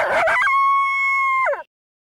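A single animal call: a rough, wavering start that settles into one long held note, which drops in pitch and breaks off after under two seconds.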